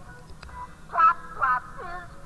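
Soundtrack of an old Alka-Seltzer TV commercial: a voice singing a short jingle over music, in short phrases with the loudest note about a second in.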